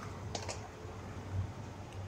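Two quick clicks, then a low thump, over a steady low hum.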